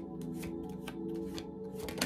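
Tarot cards being shuffled by hand, overhand style, a string of soft, irregular card flicks and riffles. A steady, sustained ambient music bed plays underneath.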